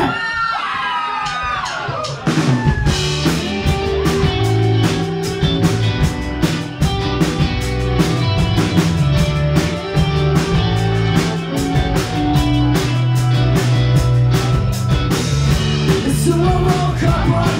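Live rock band playing the opening of a song. After a brief sparse lead-in, drum kit, bass guitar and electric guitars come in together about two and a half seconds in and carry on with a steady driving beat.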